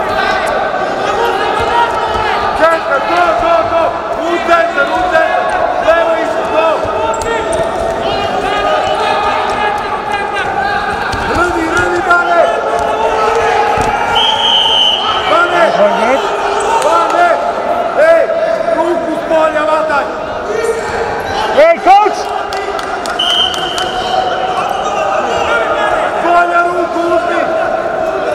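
Greco-Roman wrestling bout in a large hall: coaches shouting over the thuds and stamps of the wrestlers on the mat, with a cluster of heavy thuds about 22 seconds in. A referee's whistle sounds twice in short single blasts, about halfway through and again near the end, around the point the scoreboard changes.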